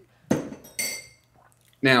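A drinking glass knocking and clinking twice, about half a second apart; the second strike rings with a bright glassy tone.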